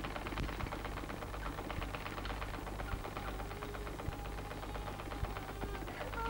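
Hand-cranked sewing machine running steadily, its needle mechanism clattering in a fast, even run of ticks.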